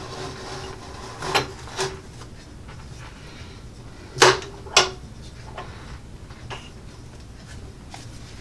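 HFS heavy-duty steel guillotine paper cutter being worked through a stack of notepads: the lever and blade are pulled down through the paper with a couple of soft knocks, then two sharp clacks about four seconds in as the mechanism comes to rest.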